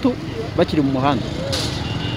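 A voice speaking in short phrases over a steady low hum of street traffic.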